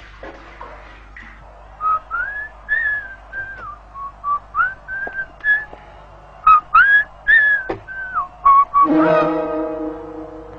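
A person whistling a tune: a run of short notes that rise and fall, beginning about two seconds in. Near the end, background music comes in with a held chord.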